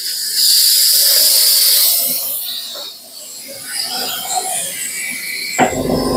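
Suction of a portable dental unit running, drawing air with a loud hiss that eases after about two seconds into a quieter, uneven sucking noise.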